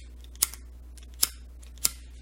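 Pocket lighter being struck at a cigarette: three sharp clicks, roughly a second or less apart, with the flame not catching.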